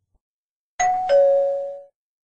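A two-note ding-dong chime, a higher note about a second in, then a lower note that rings and fades away.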